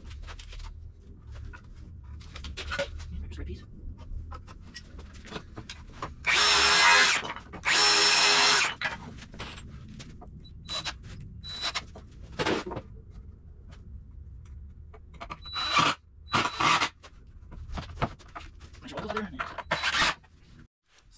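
Cordless screw gun driving wood screws into 2x4 lumber: two long runs about six and eight seconds in, then two short bursts near the end, with clicks and knocks of handling the wood between.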